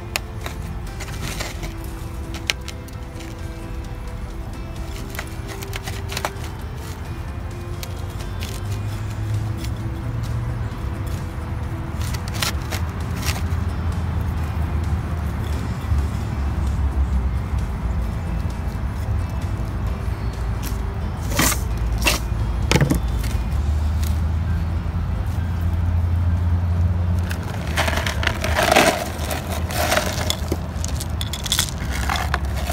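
Soil and a terracotta pot being handled during repotting, with a few sharp knocks and scrapes in the second half, over a steady low rumble and faint sustained tones.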